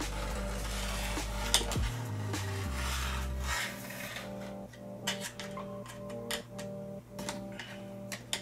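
Background music with a steady bass line, overlaid by brief, intermittent scrapes and ticks of a small hand tool on the TV's sheet-metal back chassis as leftover sticky tape is scraped off.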